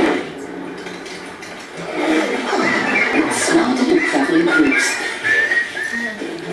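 Soundtrack of an animated TV commercial played through room speakers: a sudden hit at the very start, then wordless cartoon animal voices chattering and squawking from about two seconds in.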